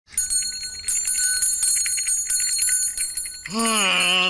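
A small brass hand bell rung fast and steadily, a bright shimmering jingle for about three seconds. Near the end a voice comes in with long, drawn-out notes.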